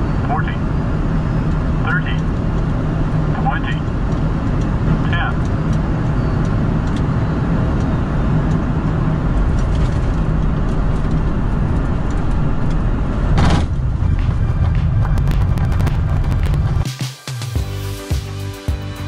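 Flight-deck noise of an Embraer E195-E2 landing and rolling out on the runway: a steady loud rush of airflow and engine noise from its geared turbofans. It carries a few short rising chirps about every second and a half in the first five seconds, and a single thump about 13 seconds in.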